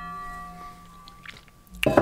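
A chord of ringing tones fading away over about a second and a half, then a short breath near the end.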